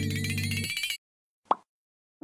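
Channel intro music: a held low synth chord under a rising whistling sweep, cutting off suddenly about halfway through. After a short silence comes a single brief pop sound effect.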